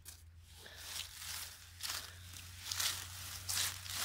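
Rustling of low forest-floor plants and dry leaves, in about five short irregular swishes, as a hand and the camera push through the vegetation.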